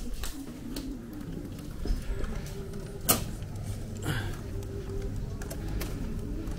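Glass lobby door being pushed open, with a single sharp click about three seconds in, amid footsteps and small handling knocks.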